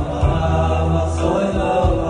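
Male soloist and a small male choir singing together in harmony over electronic keyboard accompaniment, with held bass notes underneath.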